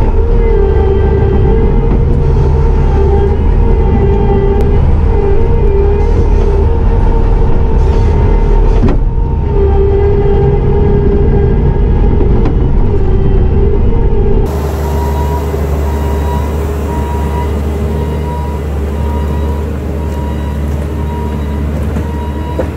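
Bobcat T650 compact track loader's diesel engine working hard with its hydraulics whining, heard loud from inside the cab while grading. About two-thirds of the way through the sound switches abruptly to a steadier, somewhat quieter engine sound with a regular beeping.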